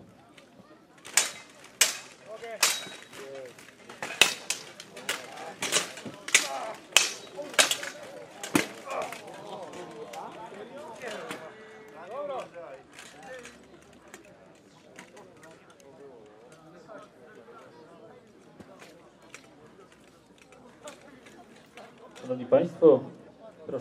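Steel swords clashing and striking plate armour in an armoured duel: about a dozen sharp metallic hits over the first nine seconds, then the blows stop and only faint crowd chatter remains.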